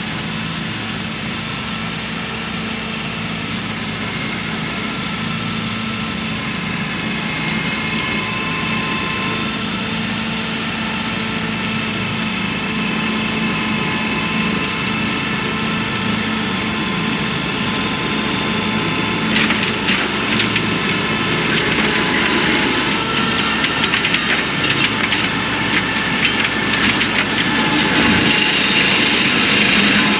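Fendt tractor engine working under load as it pulls a forestry mulcher up a steep slope, the mulcher's rotor whining steadily, growing louder as it comes closer. From about two-thirds of the way through, a dense crackling and splintering joins in as the mulcher shreds branches and brush.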